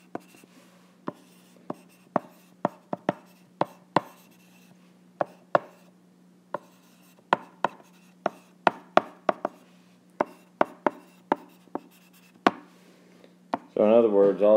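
A stylus tapping and clicking against an iPad's glass screen while writing by hand: sharp, irregular clicks, a few a second, with a brief pause about six seconds in. A faint steady low hum runs underneath.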